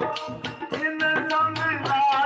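Sikh kirtan played live on harmonium and tabla, with a man singing. After a brief dip at the start, the tabla strokes and the held harmonium notes build back up.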